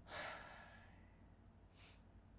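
A man's faint breathy exhale through the hand over his mouth, like a stifled laugh, lasting about a second, then a short quick breath near the end.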